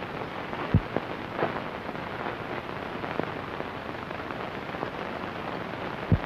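Steady hiss and crackle of an early-1930s optical film soundtrack, with one low thump about a second in.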